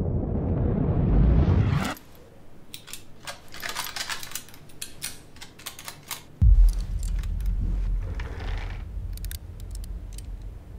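The low rumble of a breaching-charge explosion dying away, cut off suddenly about two seconds in, followed by scattered light clicks and clinks of falling debris. About six and a half seconds in, a sudden deep low boom opens a steady low rumble.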